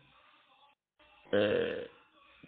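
A pause, then about a second and a third in a single short, low, throaty vocal sound from the male speaker, lasting about half a second.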